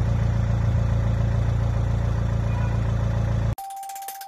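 A vehicle engine idling, a steady low hum that cuts off abruptly about three and a half seconds in. Jingle music with one held high tone starts in its place.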